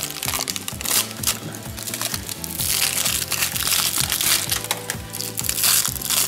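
Clear plastic wrap crinkling and crackling in short bursts as it is peeled by hand off a dig-kit ball, over background music.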